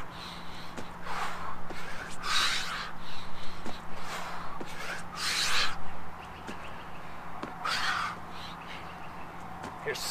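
A man's heavy, forceful breathing during burpees: a loud, breathy exhale about every one to two seconds.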